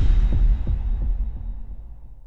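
Logo-intro sound effect: a deep bass boom with a few low, throbbing pulses in the first second, then a slow fade away.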